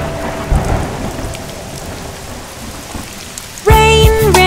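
Rain sound effect: a steady hiss of falling rain with a rumble of thunder about half a second in, slowly dying away. Music and singing come in just before the end.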